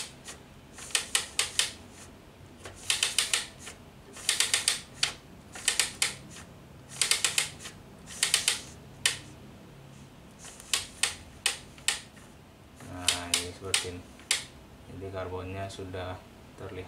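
Clicking from the ribbon spool of a Zebra GT820 thermal-transfer barcode printer being turned by hand to wind the ribbon on, in quick runs of several sharp clicks about once a second.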